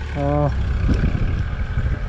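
Diesel engine of an E-taen farm truck running steadily, a low continuous rumble heard from its loaded cane bed.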